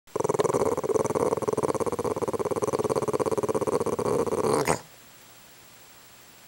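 Boston Terrier growling at a fly: one long, continuous rattling growl that breaks off suddenly about four and a half seconds in with a short rising note.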